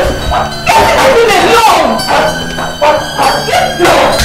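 People shouting and crying out in short, strained yells while they grapple in a fight, with no clear words.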